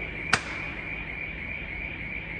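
Building alarm panel sounding a steady high-pitched electronic tone, with a single sharp click about a third of a second in.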